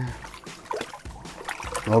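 Water splashing and trickling in an ice-fishing hole as a lake trout is grabbed by hand and lifted out, with a few small knocks and splashes.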